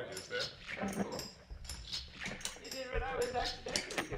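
Quiet, indistinct vocal sounds with short, wavering high-pitched whines and a few clicks.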